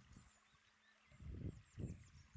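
Faint rush of a shallow, rocky stream, with a few faint high chirps from a small bird in the second half. Two low rumbling thumps, the loudest sounds, come in the second half.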